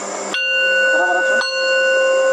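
Metal singing bowl struck twice, about a second apart, each strike ringing on as a sustained, steady chord of several clear tones.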